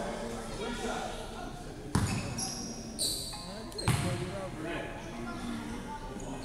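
Basketball bounced on a hardwood gym floor, three bounces about a second apart, echoing in the hall.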